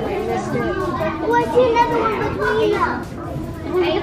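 Chatter of a crowd of onlookers, several voices overlapping, with children's voices among them.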